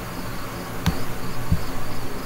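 Crickets chirping in the background, a steady high pulsing trill, with a couple of short clicks from a computer mouse as text is selected on screen.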